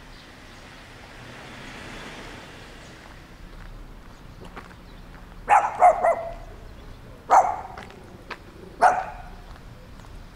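A dog barking: a quick run of about three barks just past the middle, then two single barks about a second and a half apart, echoing off the buildings.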